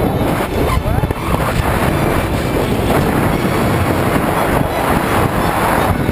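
Loud, steady rush of freefall wind blasting over a body-worn camera's microphone during a tandem skydive.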